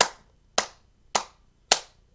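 Hand clapping in a slow, steady rhythm, just under two claps a second, four sharp claps in all.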